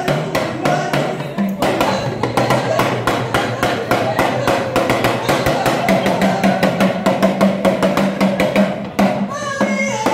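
Live Nigerian party music: fast, dense drumming, including a talking drum, over a steady bass line. A woman's singing comes in near the end.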